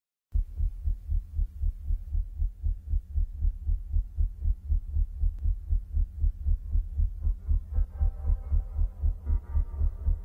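A heartbeat sound, a steady low thumping pulse at about three thumps a second, opening a music track. Sustained musical tones fade in over it about eight seconds in.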